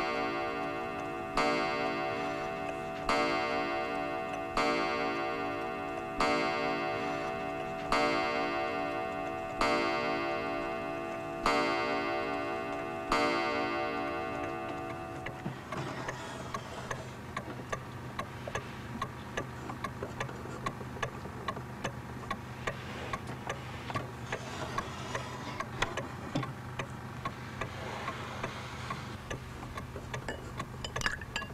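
An old wooden-cased pendulum mantel clock strikes the hour nine times, each ringing stroke dying away before the next, about one every second and a half to two seconds. Then it ticks steadily.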